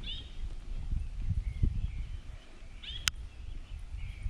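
Bird calls from the riverside trees: short curving notes heard near the start and again about three seconds in, with a fainter call between, over a low rumbling background noise. A single sharp click comes about three seconds in.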